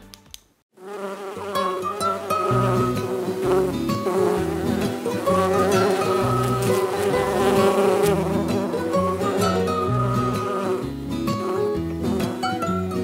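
Cartoon bee buzzing sound effect over background music. The music comes in about a second in, and a stepping bass line joins a little later.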